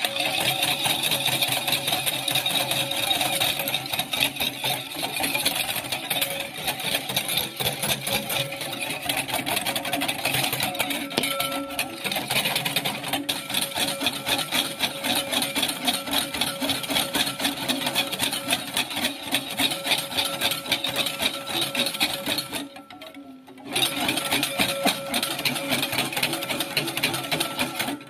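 Wire balloon whisk beating a still-runny dalgona coffee mixture (instant coffee, sugar and water) fast against a ceramic bowl. It makes a rapid, continuous metallic clatter and slosh, which stops for about a second near the end and then starts again.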